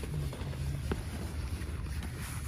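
Wind buffeting the microphone: a steady low rumble, with a faint click about a second in.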